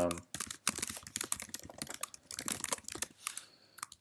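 Typing on a computer keyboard: a quick, steady run of keystrokes entering a short sentence, thinning out to a few last taps near the end.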